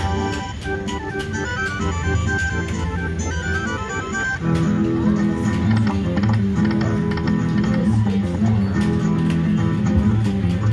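Aristocrat More Chilli poker machine playing its free-games music: a run of quick stepped notes, then, about four and a half seconds in, a louder, lower plucked-guitar tune. The music plays while a win is being added up on the meter.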